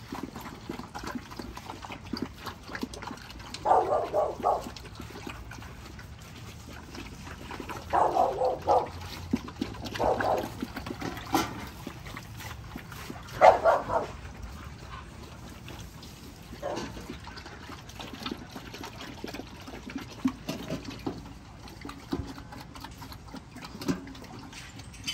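Several XL bully puppies drinking and eating together from a metal bucket and bowl. Short, louder dog noises come every few seconds; the loudest is a little past halfway.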